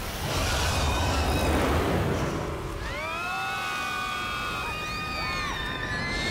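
Trailer sound effects: a loud rushing noise over a low rumble, then from about halfway a long shriek of several rising tones that hold and fade near the end.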